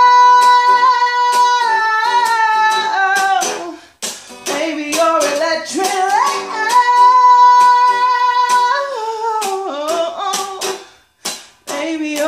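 A woman belting two long held high notes, sliding up into the second, over steadily strummed guitar; the sound drops away briefly about four seconds in and again near the end.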